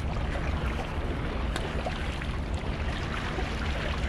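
Wind noise on the microphone over small waves lapping and splashing against the shoreline rocks, with scattered little water slaps.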